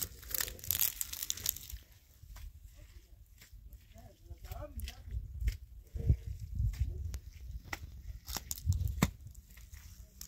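Bare hands scraping and crumbling dry earth and straw on rocky ground: an irregular run of dry crackles, rustles and small clicks.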